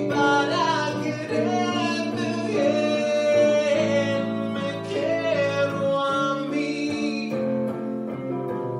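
A tango sung live over electric guitar accompaniment: one melodic vocal line with a wavering pitch over plucked guitar chords.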